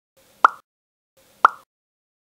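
Two identical short 'pop' sound effects about a second apart, each a sharp pop that dies away quickly, cueing props popping into view in a stop-motion animation.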